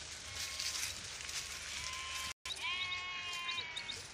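Sheep of a grazing flock bleating: a few high, held calls, the longest and loudest about two-thirds of the way in. The sound cuts out completely for a split second just before that call. A faint rustling runs underneath.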